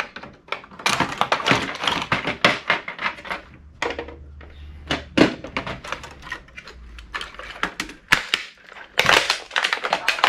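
Rapid clicking and clattering of plastic and metal as a VCR's circuit board is worked loose with pliers and pulled off its plastic chassis. A dense run of clicks comes first, then a quieter stretch with a few single knocks, and more clatter near the end.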